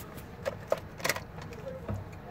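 A few light clicks and knocks, about four over two seconds, as the ignition key of a 2015 Nissan NV200 is turned off, with the keys clinking.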